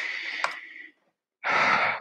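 A man breathing out audibly close to a headset microphone, with a small click about half a second in, then a quick breath in near the end.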